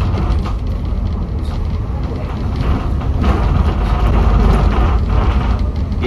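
Alexander Dennis Enviro400 double-decker bus in motion, heard from inside: a steady low engine drone and road rumble with light rattles from the body, swelling a little louder around the middle.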